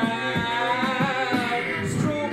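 A man singing over layered, looped a cappella vocal parts, with a beatboxed beat of about four hits a second underneath.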